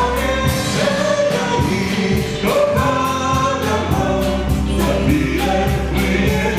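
A small amateur band playing a song live: a woman singing over electric guitar, electric keyboard and drum kit, with cymbal strokes keeping a steady beat.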